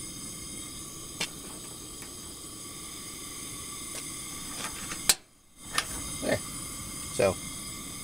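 Coleman Triton propane camp stove burner, just lit, running with a steady hiss. A sharp click comes about five seconds in, followed by a brief drop to near silence.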